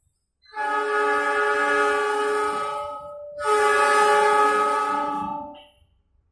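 KAI diesel locomotive's air horn sounding two long blasts as the train approaches, the second starting about half a second after the first ends.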